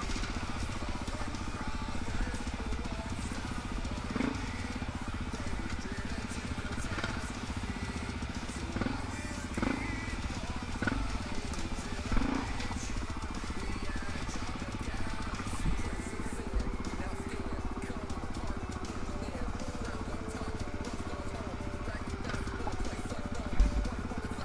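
Four-stroke single-cylinder dirt bike engine running at low speed on slow, technical trail riding, with several short throttle blips in the first half. A sharp knock sounds near the end.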